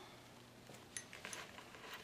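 Faint handling sounds of fingers pressing a silk flower petal onto sticky tape on a wine glass: a few soft ticks in the second half.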